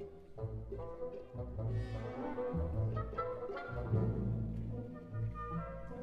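Symphony orchestra playing a movement of a concerto for two trombones, brass to the fore over the orchestra, with repeated low bass notes underneath.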